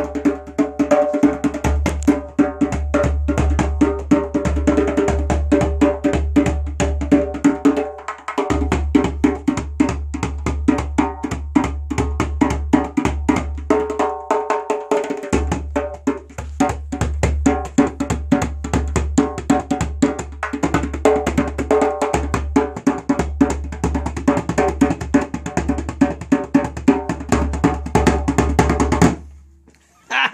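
Djembe played with bare hands: a fast, dense run of strokes with a deep low boom underneath and sharp high slaps on top. The playing stops suddenly about a second before the end.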